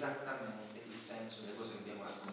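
A man speaking Italian.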